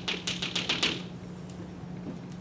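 Chalk on a chalkboard: a quick run of sharp taps in about the first second as dots are tapped out after a plus sign.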